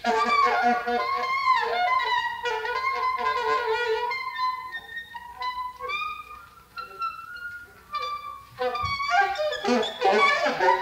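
Alto saxophone in free-improvised playing, starting abruptly after a near-silent gap: long wavering, bending tones for the first few seconds, then shorter broken phrases and a denser flurry near the end.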